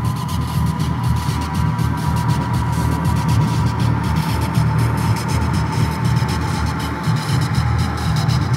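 Electronic dronescape sculpted from static and noise: a steady low hum under a haze of hissing static, with a thin high tone slowly sinking in pitch.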